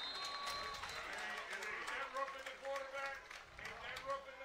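Faint, distant voices carrying across an open football stadium, with a steady high tone lasting about the first second.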